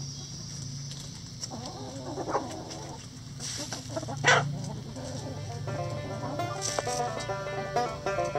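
A backyard flock of laying hens clucking and calling close by, with one loud, sharp sound about four seconds in. Plucked banjo music comes in during the second half.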